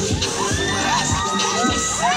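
Crowd of young people shouting and cheering, many voices calling out in short rising-and-falling shouts, with one call held for most of a second near the end.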